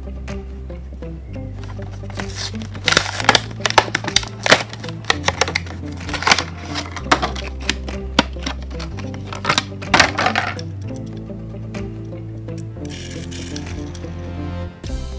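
Clear plastic blister packaging of a die-cast toy car crackling and clicking as it is pried open by hand. There is a dense run of sharp cracks from about two seconds in to about ten seconds in, over background music with a steady bass line.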